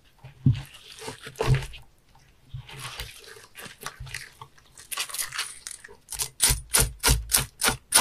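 Knife scraping and working a sea bass during cleaning, in short raspy strokes with a dull knock under each. The strokes come irregularly at first, then settle into a fast, even run of about four a second from about six seconds in.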